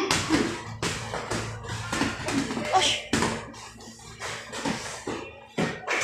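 Gloved punches and kicks landing in a sparring exchange: a quick run of sharp smacks, about two to three a second, that starts suddenly.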